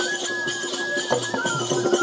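Bundeli Rai folk dance music: a high, clear melody line moving in small steps over a steady lower drone, with quick percussion strokes.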